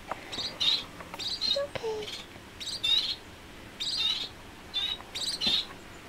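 Society finches giving a series of short, high chirping calls, about ten in all, several coming in quick pairs.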